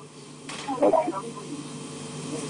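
Steady hiss with a few brief, faint snatches of a voice about half a second to a second in.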